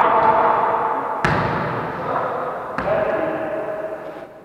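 Two sharp smacks of a volleyball being hit, about a second and a half apart, each ringing on in the echo of a large gym hall, with players' voices calling out.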